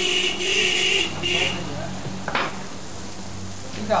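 Youtiao (dough sticks) deep-frying in a wok of hot oil: a loud sizzle for the first second and a half, then a quieter steady sizzle as they are turned with long chopsticks.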